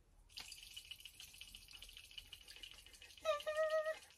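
A small plastic soil pH test capsule holding soil, water and test powder, shaken hard: a faint, fast rattling swish that stops about three seconds in.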